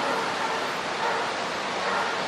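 Steady hiss of background noise with no clear event, heard in a pause between a man's sentences.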